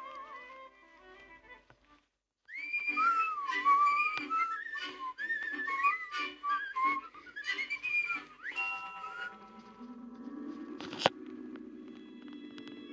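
A whistled tune, after a brief silence, runs for about six seconds as one wavering melody line. It gives way to soft sustained music tones, with a single sharp click about eleven seconds in.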